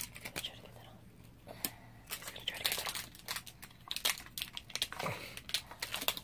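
Folded paper leaflet being unfolded and handled, crinkling and rustling in a run of short crackles that grows busiest from about two seconds in.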